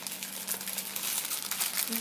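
A sealed clear plastic bag crinkling as it is handled, a continuous crackle of many small, quick clicks.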